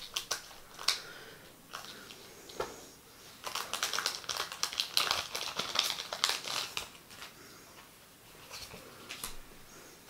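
Scissors snipping through the top of a foil Carddass booster pack in a few sharp clicks, then the wrapper crinkling and rustling as the cards are pulled out, busiest from about three and a half to seven seconds in.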